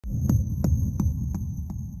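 Intro sound effect for an animated title: a deep low hum with evenly spaced ticks about three a second, the ticks growing fainter, over a faint high steady tone.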